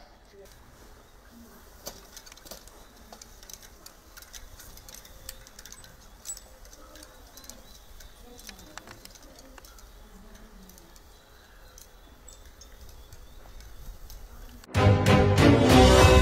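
Quiet outdoor ambience with scattered faint clicks and a few faint bird calls. About fifteen seconds in, a loud news-agency logo jingle starts suddenly, with several held tones ringing on.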